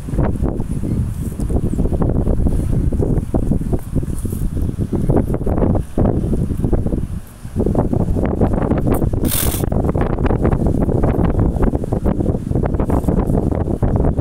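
Wind buffeting the microphone, loud and steady, with a brief lull about seven seconds in and a short hiss a couple of seconds later.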